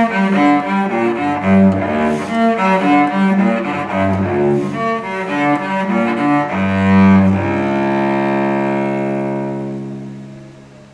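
Solo cello played with the bow: a run of quick notes over a recurring low bass note. From about seven and a half seconds in, it settles on one long held note that fades away near the end.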